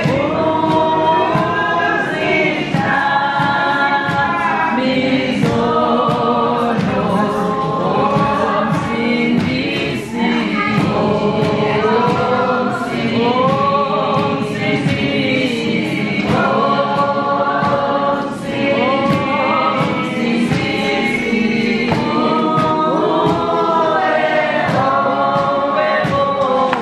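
A choir singing gospel music in long, gliding phrases, with brief breaks between some of them.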